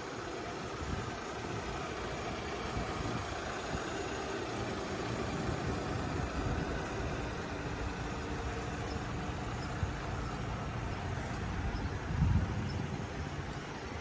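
Cadillac XT4's 2.0-litre turbo engine idling steadily, a low even rumble. A brief thump stands out near the end.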